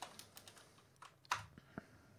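Faint computer keyboard keystrokes: several light clicks in the first half second, then a sharper one about a second and a third in and a last one near the end, as a command is entered to run a program in a terminal.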